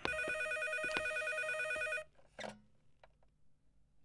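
Corded landline telephone ringing with a rapid trill for about two seconds, then stopping abruptly; a short clatter follows about half a second later.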